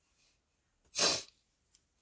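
A single short, breathy burst from a woman's nose or mouth about a second in, in a pause between her sentences.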